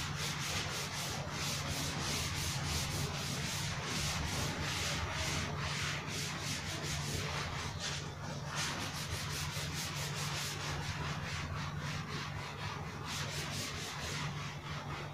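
Blackboard duster rubbing chalk off a blackboard in quick, repeated back-and-forth strokes, about three a second.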